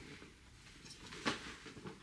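Faint handling sounds of an overfull hard-shell suitcase being pressed down shut, with one short knock a little past a second in.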